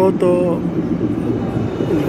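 City tram approaching along street rails, a steady low hum under the street noise.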